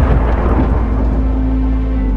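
Thunder sound effect over dark trailer music: a deep rumble with a hiss that fades over about two seconds, as held low music tones come in.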